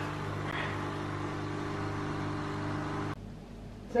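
Coffee machine running while making a cappuccino: a steady low electric hum that cuts off abruptly about three seconds in.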